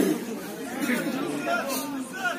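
Indistinct chatter of voices close to the microphone, with a louder burst at the very start.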